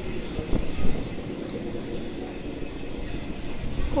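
Rumbling handling noise and rustling from a phone being moved about, with a couple of knocks about half a second to a second in.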